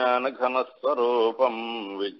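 A man chanting a Sanskrit invocation verse in a sustained recitation tone, in short melodic phrases with a brief break, the last syllable held steady near the end.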